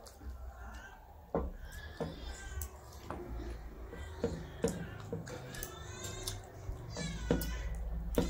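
Fingers mixing and scooping rice and curry on brass plates, with sharp clicks against the metal. Several short, high, wavering calls, like an animal's, sound over it from about two seconds in.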